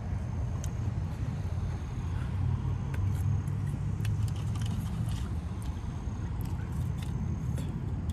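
Steady low hum of a car idling, heard from inside the cabin, with scattered faint clicks from handling food and a plastic sauce cup.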